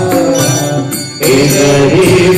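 Devotional music in a mantra-chanting style: a sustained melody over accompaniment. It dips briefly a little after a second in, then comes back.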